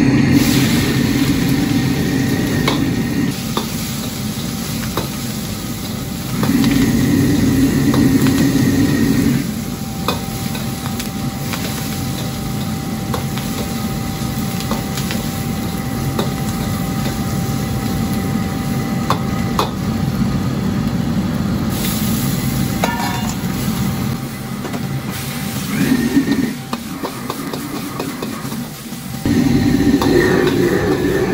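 Stir-frying in a wok over a gas wok burner: food sizzling and a metal ladle scraping and knocking against the wok, over the steady noise of the burner flame. It gets louder for a few seconds at the start and again about six seconds in.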